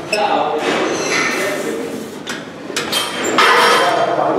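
Iron weight plates and an EZ curl bar clinking and knocking as the loaded bar is handled, with voices talking over it.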